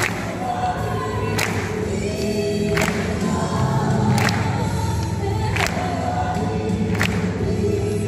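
High-school choir singing together, holding long notes in a slow, even pulse with a new syllable roughly every second and a half.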